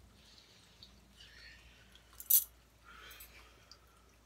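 Quiet room with a few faint soft rustles and one sharp click or tap a little over two seconds in.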